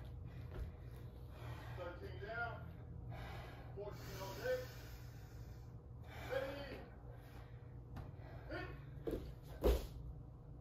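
A woman breathing hard with gasps and short voiced, effortful exhales between burpees. Near the end come two thumps, the second the loudest, as her body hits the floor going down into the plank.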